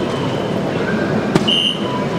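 A soft-tip dart strikes an electronic dartboard with a sharp click about a second and a half in, and the machine answers with a short electronic tone as it scores a single 17, over steady hall noise.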